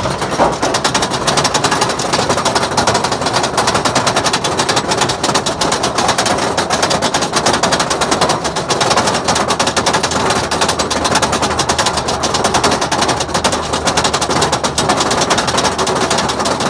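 Roller coaster train climbing the chain lift hill: the lift chain and anti-rollback ratchet clatter in a loud, rapid, steady run of clicks.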